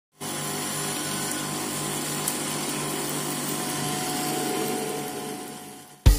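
Submersible pump's electric motor running steadily out of water, with a contact tachometer pressed to its shaft to read its speed: a steady hum with a higher steady tone over it, fading out near the end.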